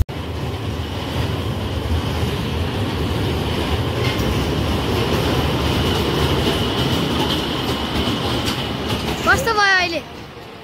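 A steady rushing noise with a faint high tone running through it. Near the end a man's voice sweeps upward in a long shout.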